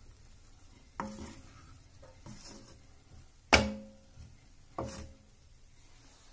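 Wooden spatula stirring poha in a metal kadai and knocking against the pan three times. Each knock leaves a brief ringing tone, and the second one, about three and a half seconds in, is the loudest; soft stirring sounds run between the knocks.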